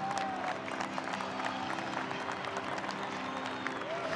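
Crowd applause, a dense patter of many hands clapping, over a soft music bed of sustained low notes.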